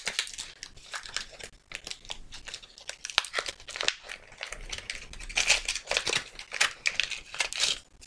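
Gift wrapping being crinkled and torn open by hand around a small package, an irregular run of crackles that grows busier in the last few seconds.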